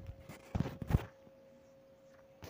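A few light knocks and brief scrapes between about half a second and a second in, from a hand handling a steel cake tin of steamed dhokla in a steel steamer pot; after that it is nearly quiet, with a faint steady hum.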